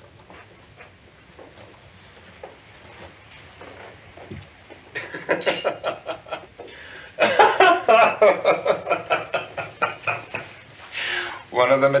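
A few faint small clicks, then a man laughing from about five seconds in, breaking into loud, rapid laughter about two seconds later.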